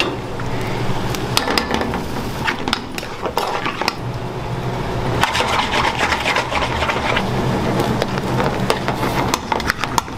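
A metal spoon scraping and clinking against metal pans as curries are stirred on a gas stove, in irregular strokes, over a steady low hum.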